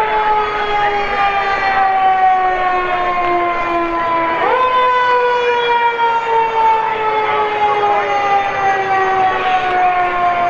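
Fire truck siren sounding in long glides: each one rises quickly in pitch and then falls slowly over several seconds. A fresh rise comes about four and a half seconds in.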